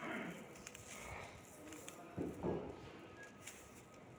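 Faint rustle and light patter of dry effervescent granules trickling from fingers onto a paper sheet, with a brief, slightly louder muffled sound a little past two seconds in.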